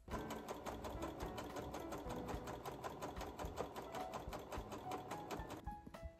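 A serger (overlock machine) running steadily at speed, stitching a seam through thick quilted fabric with a rapid, even rhythm. It stops abruptly just before the end.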